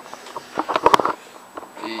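Handling noise from a handheld camera: a quick run of small knocks and rustles as it is moved over papers and a book and turned round.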